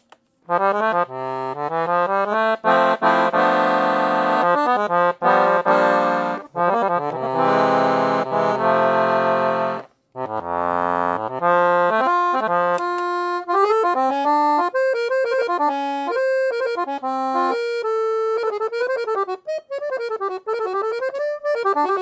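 Pancordion Baton piano accordion, with a double tone chamber and four sets of handmade treble reeds (LMMH), being played. It opens with full sustained chords over bass notes, stops briefly about ten seconds in, then goes on with a quicker running melody over lighter accompaniment.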